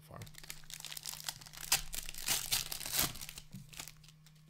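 Shiny plastic wrapper of a hockey card pack crinkling and crackling as it is opened and crumpled by hand, loudest in the middle and dying away near the end.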